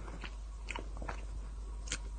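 A person chewing a mouthful of ice cream with lips closed: a few soft, short mouth clicks spread through the two seconds.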